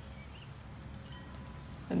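Outdoor ambience: a low, steady rumble on the microphone with a few faint, short high bird chirps.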